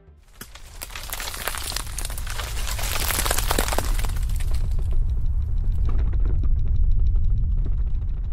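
Logo-reveal sound effect: a dense crackling and shattering noise over a deep rumble. The crackle is thickest in the first half, and the rumble builds to its loudest near the end.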